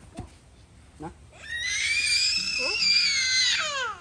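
A young child's high-pitched scream, held for about two seconds from about a second and a half in, its pitch sliding down as it ends.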